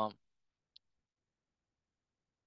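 Near silence after a spoken word trails off at the very start, broken by one faint, very short tick just under a second in.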